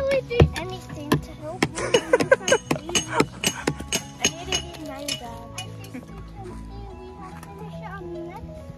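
Claw hammer knocking nails into a timber log edging: two sharp blows in the first half second, over background music.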